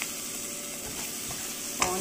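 Onions, peas and moringa leaves sizzling in oil in a pan while a metal spoon stirs them, with a few light scrapes.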